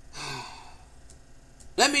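A man sighing: one breathy exhale lasting just under a second.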